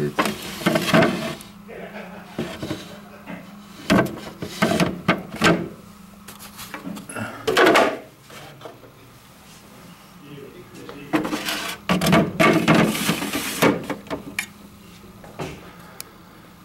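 Plastic parts of a coffee vending machine being handled: a waste container pulled out, emptied and slid back, with irregular knocks, scrapes and clatter. A low steady hum from the machine runs underneath and fades out about halfway.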